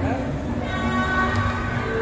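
Several conch shells (shankh) blown together, giving overlapping steady horn-like tones at different pitches, the traditional blowing that greets the groom at a Bengali wedding.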